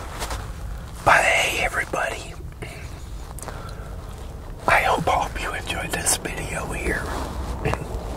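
A man's voice, soft and breathy like whispering, in two short stretches, over a steady low rumble.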